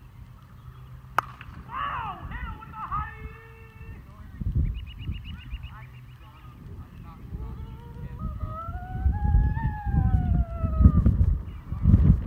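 A plastic wiffle bat cracks once against the ball about a second in. Players then shout and whoop, with one long yell that rises and falls near the end.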